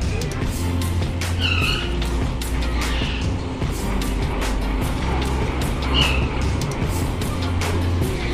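Busy amusement park sound: loud music with a heavy, pulsing bass, overlaid with many sharp knocks and a few short high squeals from the rides.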